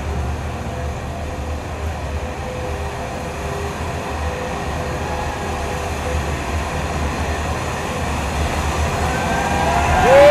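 Ambient electronic soundscape over a theatre PA: a steady deep rumble with faint held tones above it, slowly growing louder toward the end.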